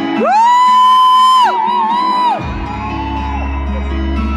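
A loud, high whoop over live band music: it rises into one long held note, then wavers before dying away. A deep bass note comes in about halfway through.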